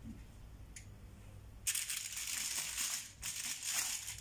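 Aluminium foil crinkling and rustling as hands press and smooth it over a bowl. It starts about halfway through, breaks off briefly, then rustles again.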